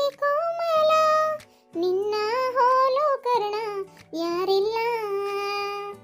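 A high-pitched voice singing a melody in three long phrases with held, wavering notes, over a backing of steady low notes.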